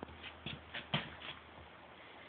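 Handling noise: a quick run of short shuffling rustles and scrapes, about six in the first second and a half, the loudest about a second in.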